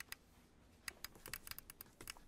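Faint, irregular clicking of keys being typed on a computer keyboard, a few isolated taps then a quicker run in the second half.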